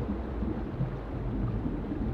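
River water flowing over a pebbly bed, a steady low rumble.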